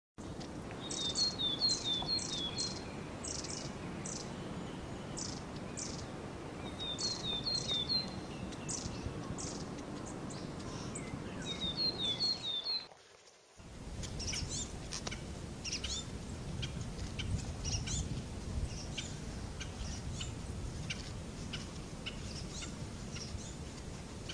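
Small birds chirping over a steady background hiss. Three times in the first half there is a short run of quick descending chirps, and after a brief dropout about halfway through, scattered chirps continue over a fuller low rumble.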